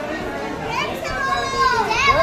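Several people talking and calling out at once, with some high-pitched voices among them.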